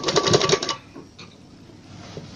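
Sewing machine stitching through fabric, a fast, even ticking of the needle at about a dozen stitches a second, which stops about three quarters of a second in.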